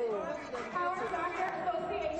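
Indistinct chatter of several people's voices, with no clear words.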